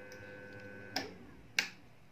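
Two short clicks, the first about a second in and a sharper one about half a second later, over a faint steady electrical hum that stops about a second in.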